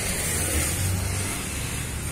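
A steady low engine hum, as of a car engine idling nearby, under a haze of rustling and handling noise from the phone being carried.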